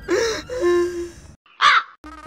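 A man's exaggerated wailing cry with a falling pitch, held briefly. After a sudden dead silence comes a single short, harsh crow caw near the end, dropped in as a comic sound effect.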